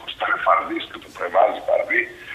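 Only speech: a man talking over a live video-call link, thin-sounding with the highs cut off.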